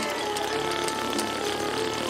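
A steady, rapid, motor-like buzzing rattle, with faint musical tones beneath it.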